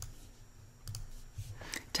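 A few faint computer mouse clicks, one at the start, a pair about a second in and several more near the end, over a low steady hum.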